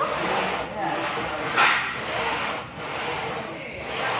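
Hard, noisy breathing of a lifter straining through leg press reps: a few long breaths in a row that swell and fade about once a second.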